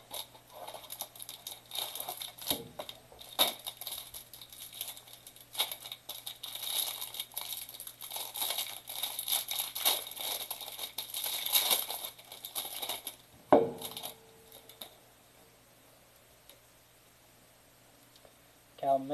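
A cardboard hanger box of trading cards being opened and the plastic wrapper around the card stack crinkled and torn off, with many small crackles. One sharp knock about thirteen seconds in, after which the handling stops.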